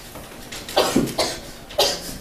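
A person coughing, three short coughs in quick succession starting under a second in.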